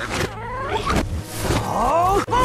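Cartoon soundtrack played backwards: sound effects with sliding, curving pitched cries that grow denser near the end, and no clear words or music.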